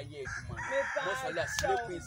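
A rooster crowing once: one long call lasting about a second and a half that sags in pitch at its end.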